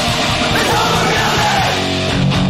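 Hardcore punk band recording: loud guitar-driven music with a shouted vocal.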